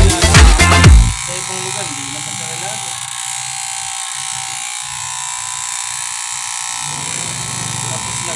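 Loud dance music with a heavy beat cuts off suddenly about a second in, leaving the steady buzz of electric hair clippers cutting hair at the side of the head.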